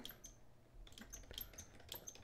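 Faint computer keyboard typing: a scattering of irregular keystrokes.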